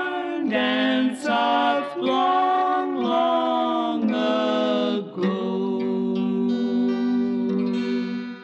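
Two women singing a slow country waltz in harmony over acoustic guitar. The song's last phrase ends on a long held note from about five seconds in.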